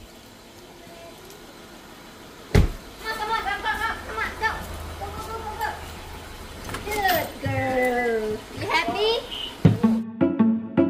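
A single sharp knock about two and a half seconds in, then a high-pitched voice making wavering, gliding sounds in short runs, without clear words.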